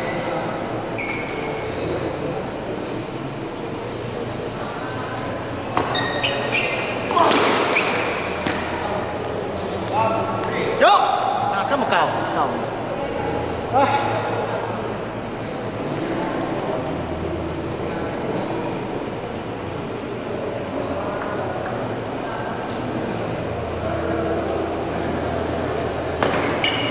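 Table tennis ball ticking and bouncing on the table and paddles in a large hall, with people's voices, loudest in calls between about 6 and 14 seconds in.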